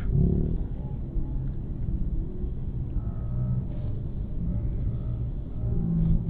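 Steady low rumble of an idling bus engine, with no sharp events.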